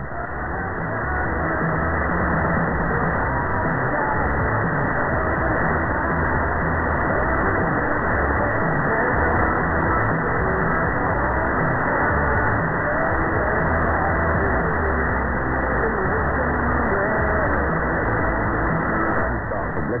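Music from Gold, received on 828 kHz medium wave with the stronger BBC Asian Network signal on the same frequency phased out by a Quantum Phaser antenna unit. It comes through a narrow AM receiver filter that cuts everything above about 2 kHz, with noise mixed in.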